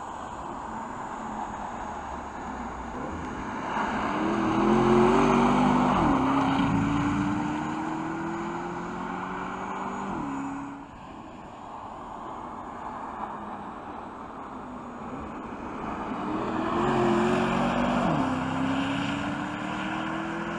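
Porsche Panamera GTS's V8 accelerating hard: the engine note climbs, drops sharply at an upshift and climbs again. This happens twice, with a sudden cut between the two runs.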